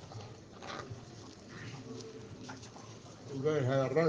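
A man's talk in a brief pause: faint murmured sounds over room noise, then his voice resumes clearly about three seconds in.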